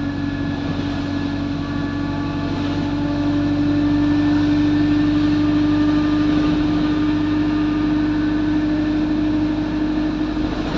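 Alexander Dennis Enviro200 single-deck bus heard from inside the passenger saloon while under way: a steady engine and drivetrain drone with one strong held tone, growing a little louder through the middle.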